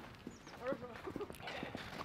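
Small clicks and knocks from a camera tripod being handled and lifted, with brief faint voices in the background.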